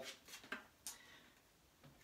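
Near silence with a few faint clicks from a small supplement capsule being pulled open and emptied over a jar of water.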